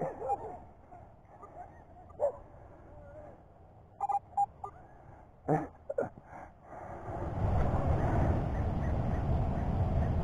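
A small dog gives a few brief, faint whimpers and yips. From about seven seconds in, a steady low noise rises and holds.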